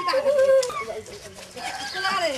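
Children's high-pitched shouts and squeals during rough play: one held call near the start, then a falling cry near the end.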